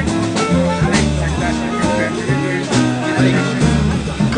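A live jazz group playing, with a grand piano, a low bass line changing note on every beat, and regular cymbal strokes.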